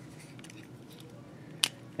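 Quiet handling of a plastic Transformers Voyager Class Whirl action figure, then one sharp click near the end as two of its parts snap together during transformation.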